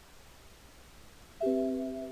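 An electronic chime: several tones struck together as one chord about one and a half seconds in, then fading out slowly, over a faint hiss.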